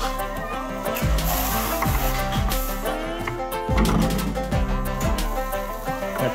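Background music with a steady beat and deep bass.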